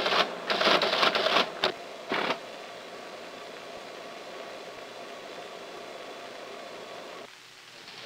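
Teletype keys and print mechanism clattering in quick bursts as a line is typed and printed, for about the first two and a half seconds. After that the teletype hums steadily until the sound cuts off shortly before the end.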